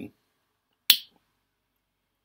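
A single sharp click from a pocket lighter being struck about a second in, as it is lit to relight a tobacco pipe.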